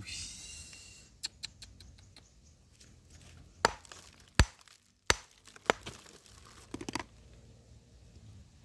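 A hand tool tapping and chipping at a stone boulder: irregular sharp knocks and clicks, loudest near the middle, with a short scrape at the start.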